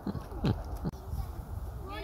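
Faint chatter of nearby voices over a low outdoor rumble, with three dull thumps in the first second, the middle one the loudest.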